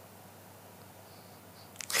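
Quiet room tone of a large hall with a faint steady hum, broken near the end as a man's voice starts speaking.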